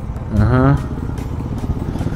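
Motorcycle engines running at low speed in slow traffic, with a steady low rumble of firing pulses. A brief voiced sound cuts in about half a second in.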